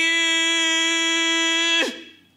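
A man holds one long sung note in the style of shigin (Japanese poetry chanting), drawing out the last syllable of "請求" at a steady pitch. Near the end the note slides down and stops.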